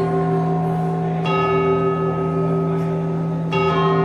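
Live instrumental music from a small keyboard, violin and saxophone ensemble: held chords over a steady bass note, with a new chord struck about a second in and another near the end.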